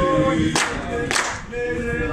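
A group of teenage boys singing together a cappella, with a steady hand clap keeping the beat a little under twice a second.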